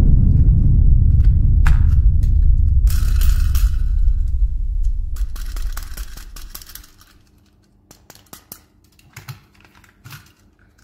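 A deep rumble that fades away over about six seconds, followed by a few light clicks and taps.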